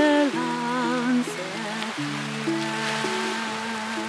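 A woman singing to acoustic guitar. Her held note with vibrato ends about a second in, and the guitar's notes ring on through the rest.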